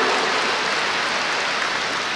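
Large audience applauding, a dense patter of clapping that slowly fades.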